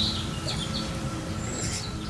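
Small birds chirping in short, high calls, with one brief whistled glide near the end, over a steady low background rumble.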